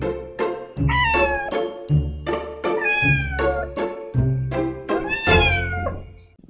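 A cat meowing three times, about two seconds apart, each meow sliding down in pitch, over background music with a steady beat.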